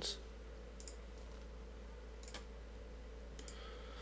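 A few faint computer mouse clicks, spread out over a few seconds, as options are picked from an on-screen menu, over a steady low electrical hum.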